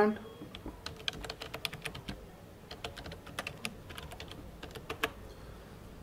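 Typing on a computer keyboard: a run of irregular keystrokes entering a short terminal command, ending with one louder key press about five seconds in.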